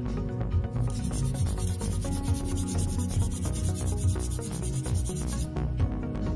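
Hand nail file rasping in quick back-and-forth strokes against a sculpted nail extension, shaping it. It starts about a second in and stops shortly before the end, over background music.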